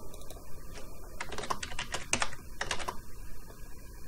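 Computer keyboard typing: a quick run of keystrokes, most of them packed between about one and three seconds in.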